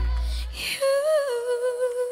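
A boy singing solo: the backing band drops out about half a second in, and he then holds one long note alone, unaccompanied, with a slight waver.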